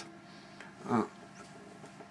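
A quiet pause with low room tone, broken by one short pitched vocal sound about a second in.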